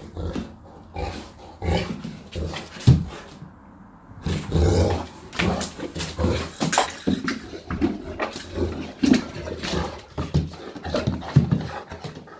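Saint Bernard making excited vocal noises in bouts, with many sharp clicks and knocks as it scrambles about on a tiled floor.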